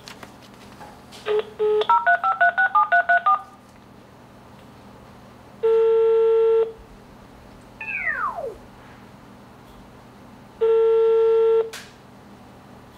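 Gigaset cordless phone dialling: a couple of short key beeps, then a rapid run of touch-tone digits as the number is sent. The ringing tone follows, sounding twice, about a second each and five seconds apart, with a short falling whine between the two rings.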